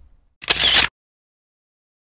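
A camera shutter sound: one short, loud shutter burst about half a second in.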